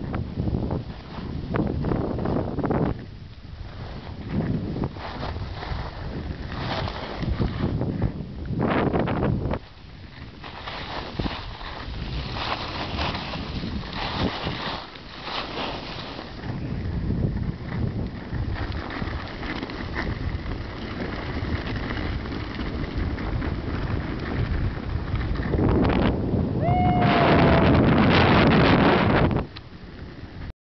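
Wind buffeting the microphone, mixed with the scrape of ski blades sliding on packed, tracked snow during a downhill run. The noise comes in surges, is loudest and roughest near the end with a brief gliding tone, then drops off suddenly.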